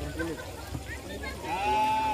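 Scattered shouts and calls of voices, then one long, high-pitched call, held for about half a second, about one and a half seconds in.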